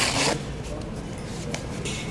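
Hook-and-loop fastener of an upper-arm blood pressure cuff pulled open, a short rip right at the start, followed by faint rustling and handling of the fabric cuff as it is taken off.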